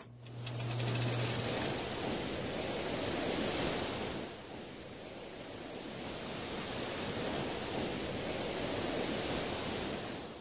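Sea waves breaking and washing up a beach: a steady rush of surf that eases off about halfway through and builds again.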